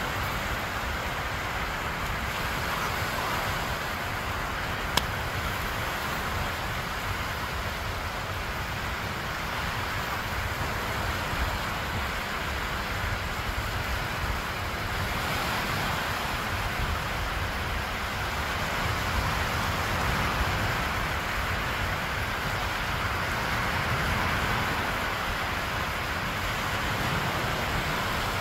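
Small waves breaking and washing up a sandy shore, a steady hiss of surf, with a low fluttering rumble of wind on the phone's microphone. A single sharp click about five seconds in.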